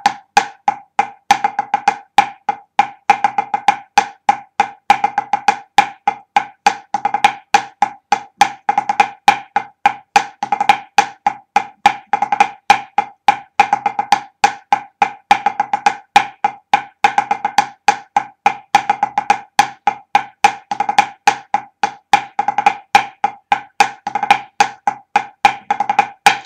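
Drumsticks playing a pipe band snare drumming exercise in 12/8: a continuous run of crisp strokes in triplet groups, with a paradiddle in every second beat group swinging from hand to hand and regular louder accents.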